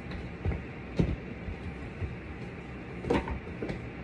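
Light knocks and clicks of a tarot card deck being handled, a few short ones scattered through, over a steady low room hum.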